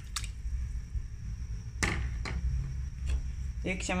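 A few short knocks and splashes as boneless chicken pieces are tipped from a plastic bowl into a steel pot of water, the sharpest about two seconds in, over a low steady rumble.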